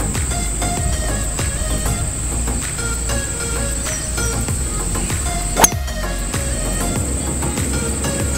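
Background music over a steady high insect trill, cut about halfway through by one sharp crack of a 4-wood (Tour Edge Exotics XCG7 Beta) striking a golf ball.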